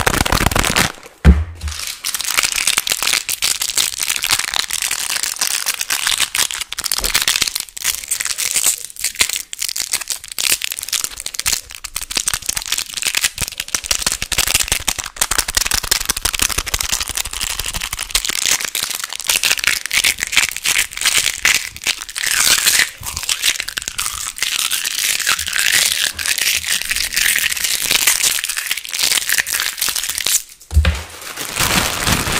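Fast, dense crinkling and crackling of packaging wrappers squeezed and rubbed right against the microphone. There is a short break and a single loud thump about a second in.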